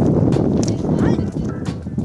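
Wind rumbling and buffeting on the microphone, with voices faintly in the background.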